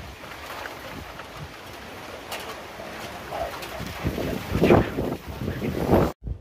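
Heavy rain pouring steadily in a storm, with a louder swell about four to five seconds in.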